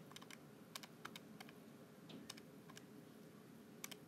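Faint clicking of keys being pressed, about a dozen single taps and quick pairs spread unevenly, as when numbers are keyed into a calculator.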